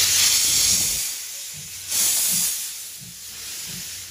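Tobu C11 325 steam locomotive slowly pulling its train out, with loud bursts of escaping steam hiss: one in the first second and another about two seconds in. The sound fades as the locomotive draws away.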